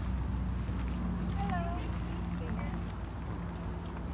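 Footsteps of people walking over grass and gravel, with faint chatter from other people and a steady low hum.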